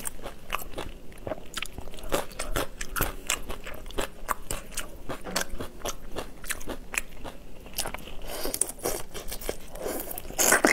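Close-miked eating: a steady run of sharp, irregular crunches and clicks from chewing crisp pickled chili pieces and whole shrimp, with a denser burst of crunching near the end as a whole shrimp is bitten into.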